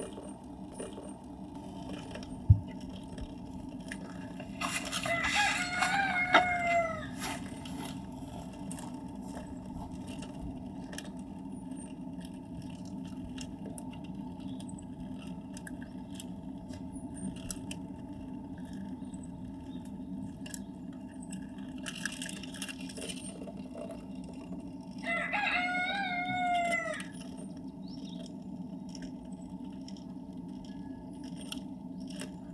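A rooster crowing twice, each crow about two seconds long, the first about five seconds in and the second about twenty-five seconds in, over a steady low background hum. There is a single sharp click about two and a half seconds in.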